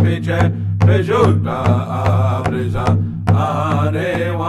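Native American powwow drum song: a voice singing in a chanting style over a beaten drum, with repeated drum strokes under the singing.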